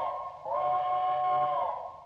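Steam locomotive chime whistle blowing two blasts, each a steady three-note chord that bends slightly up as it starts and down as it stops. The first ends early on and the second, longer one tails away near the end.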